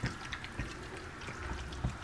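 Metal spoon stirring mayonnaise into flaked tuna in a plastic container: faint wet squishing with a couple of light clicks of the spoon, one near the start and one near the end.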